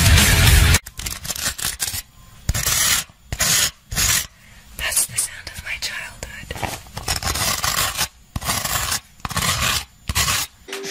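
Close-miked ASMR: soft whispering with scratching and rubbing of an object against the microphones, in short broken bursts. It follows a brief loud rush of noise at the very start.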